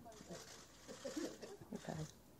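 Faint, indistinct murmur of voices over quiet room noise.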